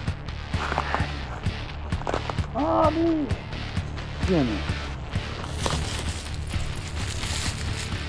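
Plastic wrapping crinkling and rustling as a package is opened by hand, in irregular crackles that grow denser and louder in the second half.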